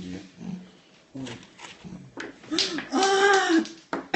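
Small dog whining: one drawn-out high cry, about a second long, that rises and falls near the end, shortly after a sharp knock.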